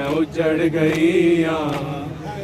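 A man chanting a noha, a Shia mourning lament, holding out a long sung line whose pitch bends and glides, over a steady low hum.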